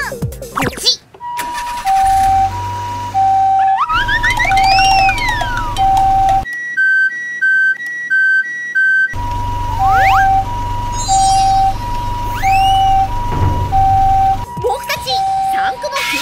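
Japanese-style two-tone ambulance siren, an electronic "pee-po" alternating between a high and a low note about once a second. About six seconds in it gives way for a few seconds to a faster two-note electronic beeping, then the siren starts again. Rising and falling whistle-like glides sound over it a few times.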